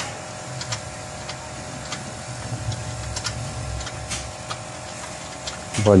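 Light, irregular metallic clicks and taps as the bolts of a new ball joint are fitted into a car's lower control arm, over a low steady hum.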